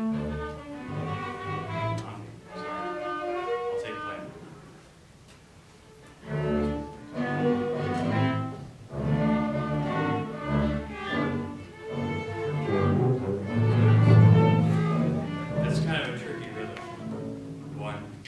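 An orchestra of strings, woodwinds and brass playing a passage under a conductor: it plays for about four seconds, breaks off, starts again about six and a half seconds in, swells to its loudest around fourteen seconds and tapers off near the end.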